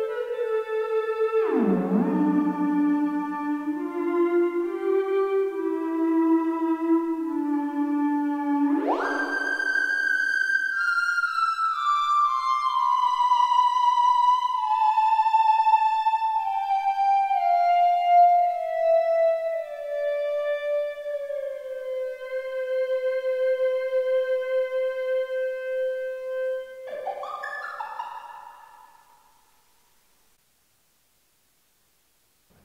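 An Ondomo, a modern handmade Ondes Martenot, is played with its ring, giving one pure electronic tone that glides between pitches, with a touch of reverb. It swoops low about two seconds in and leaps high about nine seconds in. It then slides slowly down in steps to a held note, rises briefly and fades out near the end.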